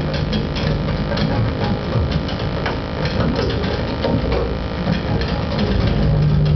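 Experimental electronic noise music played live: a dense, irregular stream of crackling clicks and glitches over a low, steady hum.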